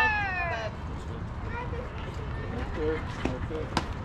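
A high voice holds one long, drawn-out call that falls in pitch at the start, like a cheer shouted from the stands or the dugout. Faint scattered voices follow, and there is a single sharp click near the end.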